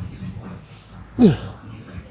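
A man's short grunt on one rep of a heavy bent-over barbell row, a voiced exhale that drops quickly in pitch, about a second in.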